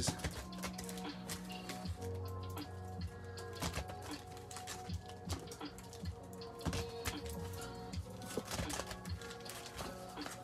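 Background music with held tones, over a steady run of light crinkles and taps from the foil wrappers of Magic: The Gathering booster packs being shuffled and stacked by hand.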